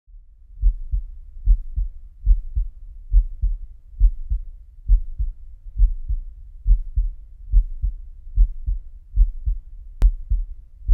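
Amplified human heartbeat, relayed from a heartbeat monitor as part of the music: a steady lub-dub double thump about 70 times a minute, over a faint low hum.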